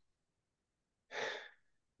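A person's single short breath, a little past halfway, between near-silent stretches.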